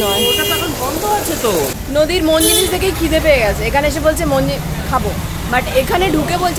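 Mostly people talking, over the steady noise of street traffic.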